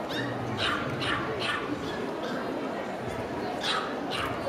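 A dog yipping and barking in short, sharp calls, about four in the first second and a half and one more near the end, over the chatter of a crowd in a large hall.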